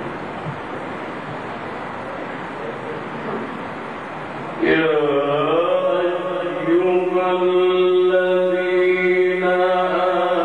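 Steady background noise of a crowded hall, then about halfway through a man's voice begins a long, melismatic Quran recitation phrase through a PA microphone, holding drawn-out notes in the Egyptian mujawwad style.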